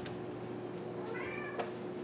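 A kitten meowing once, a short, faint, high-pitched mew about a second in.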